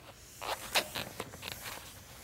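Chalkboard eraser rubbing across a blackboard in a quick series of about six short wiping strokes.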